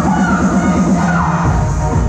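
Loud electronic dance music with a steady beat; a heavier bass comes in about one and a half seconds in.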